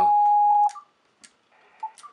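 Steady whistle-like beat note of about 800 Hz from a receiver tuned to the unmodulated carrier of a Heathkit VF-1 VFO on 20 meters. The note cuts off suddenly under a second in and is followed by a few faint clicks.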